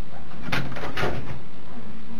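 A person's heavy, partly voiced sigh lasting about a second, starting about half a second in.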